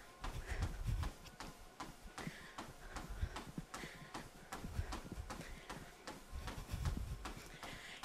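Running footfalls on a treadmill belt, faint, in a quick, even rhythm of soft thuds.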